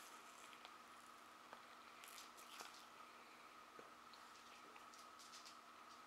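Near silence: faint room tone with a thin steady whine, and a few soft, wet mouth clicks from chewing a marshmallow Peeps candy.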